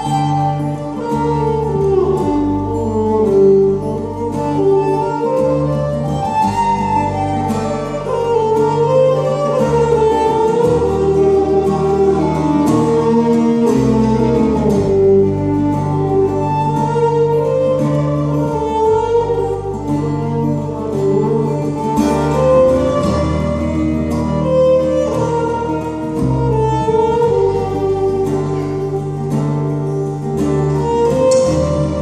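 Live folk band playing an instrumental passage: a fiddle carries the melody over strummed acoustic guitar, a bass line and drums.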